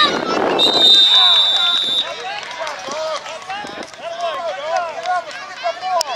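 A whistle blows one long steady blast about half a second in, lasting over a second, as the tackled play is whistled dead. Many voices of coaches, players and spectators shout throughout.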